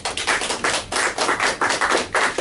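A small audience applauding, rapid overlapping hand claps throughout.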